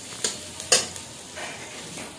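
Sliced onions and green chillies sizzling in oil in a metal kadai while a metal spatula stirs and scrapes them. A few sharp clinks of the spatula against the pan stand out, the loudest a little under a second in.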